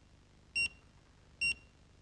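Danfoss TPOne programmable room thermostat giving a short, high electronic beep each time its arrow key is pressed to step the start time forward. Two beeps, about a second apart.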